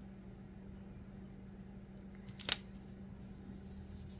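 Quiet room tone with a steady low hum, and one sharp short click about two and a half seconds in as metal tweezers set a planner sticker on the page.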